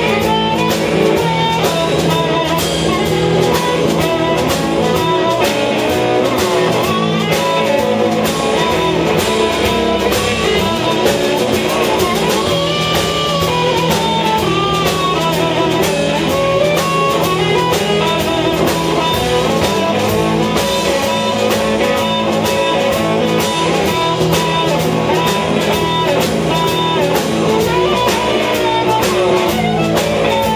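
Live blues band: an amplified harmonica cupped to a microphone plays bending, sustained notes over electric guitar and a drum beat.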